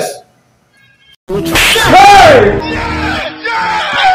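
Near silence, then a sudden loud noise about a second in, followed by a long vocal cry whose pitch rises and then falls, over background music.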